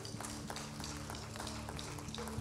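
Audience applause as scattered, uneven hand claps, over a soft held chord from the band.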